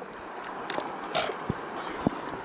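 Shallow creek water running steadily, with a few light clicks and taps from a plastic gold pan and squeeze bottle being handled.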